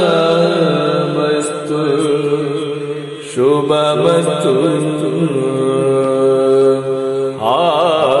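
A male voice singing in Yakshagana bhagavathike style, holding long drawn-out notes. A new phrase starts about three seconds in, and near the end the voice slides into a wavering, ornamented note.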